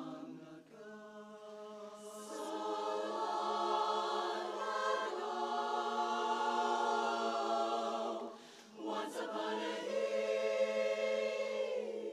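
Women's barbershop chorus singing a cappella, many voices holding sustained chords in close harmony. The sound drops away briefly about three-quarters of the way through, then the chords come back in full.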